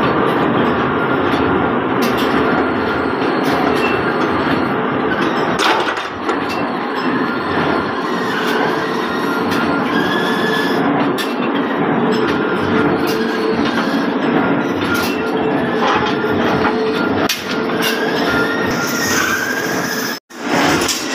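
Chain-driven drawbench running: a heavy roller chain clattering steadily along its steel trough, with a steady hum and scattered metallic clicks.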